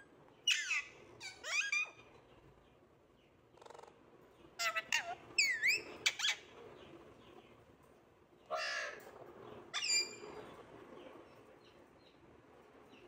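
Alexandrine parakeet giving a string of short, harsh calls with sweeping pitch, in three bunches separated by pauses of a second or two.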